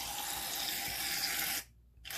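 Aerosol can of Barbasol shaving cream spraying foam into a jar: a steady hiss that cuts off about a second and a half in.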